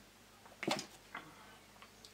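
Quiet room sounds as a drink from a bottle ends: one short noisy burst about two-thirds of a second in, then two faint clicks.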